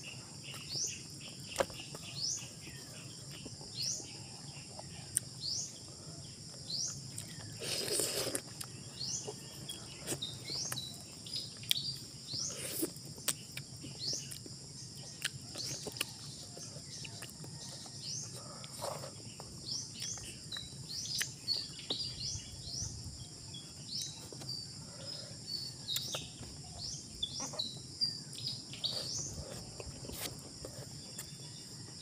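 A steady high insect drone with many short, rising bird chirps throughout. Over it come close chewing and lip-smacking clicks as fish is eaten by hand, with a louder, noisier burst about eight seconds in.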